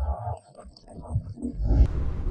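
A low rumble, brief at first, then swelling again near the end.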